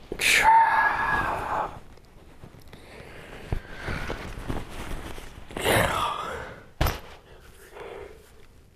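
A man waking up in a car, letting out a long, loud yawning groan, a softer breathy sigh, and a second groan that rises and falls. A single sharp knock comes near the end.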